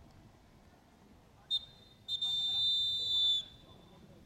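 Referee's whistle: a short blast about one and a half seconds in, then a long blast of over a second, shrill and slightly warbling.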